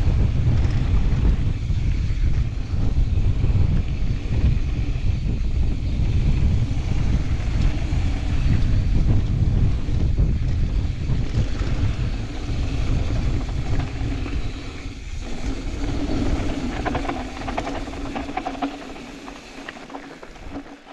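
Wind buffeting an action-camera microphone on a mountain bike, with tyres rumbling over a dirt trail. The noise eases over the last few seconds as the bike slows.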